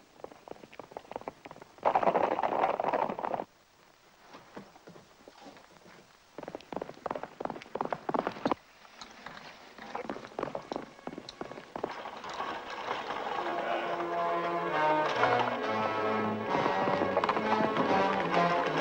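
Hoofbeats of galloping horses: a loud burst about two seconds in from a group of riders, then scattered runs of clip-clops. Film-score music comes in about twelve seconds in and swells.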